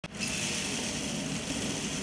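Drum coffee roaster running: a steady mechanical hum with an even rush of beans churning over it.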